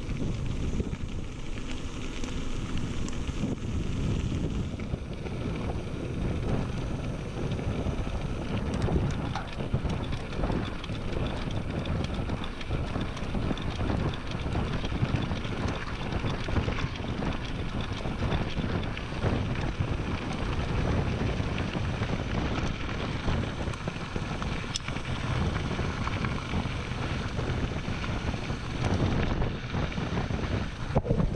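Wind rushing over an action camera's microphone together with mountain bike tyres rolling fast over a chalk gravel track, a steady noise full of small crunches, crackles and rattles.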